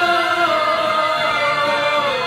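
A group of young voices singing together, holding a long note through the whole moment.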